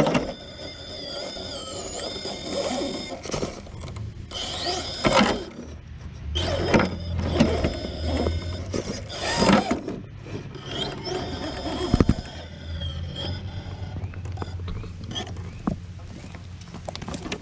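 Scale RC rock crawler's brushless motor and geared transmission whining, the pitch rising and falling as the throttle is worked, with the tyres scrabbling and grinding against rock as it tries to climb. There is a sharp knock about twelve seconds in.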